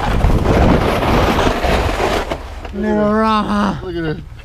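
Wind buffeting the microphone for about two seconds, then a man's voice calls out once in a drawn-out cry that rises and falls in pitch.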